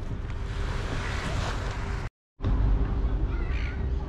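Outdoor ambience with a steady low rumble of wind on the microphone, broken by a brief dead-silent gap about two seconds in.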